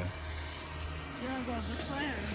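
Faint voices over a steady low rumble and the light hiss of rain.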